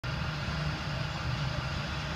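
Tow truck engine idling: a steady low rumble.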